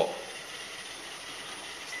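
Roomba robot vacuum running with its vacuum motor and brushes switched on, a steady hiss.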